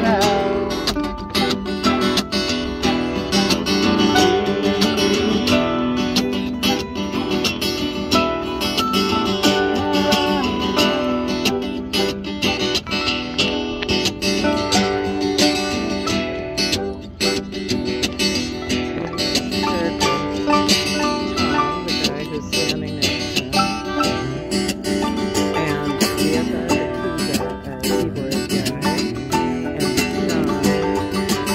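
Acoustic guitars and a mandolin strummed together in a steady, continuous folk jam.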